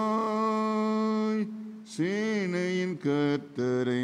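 A man singing a slow Tamil Christian hymn solo, in a chant-like style. He holds a long note for about a second and a half, pauses briefly, then sings several shorter phrases.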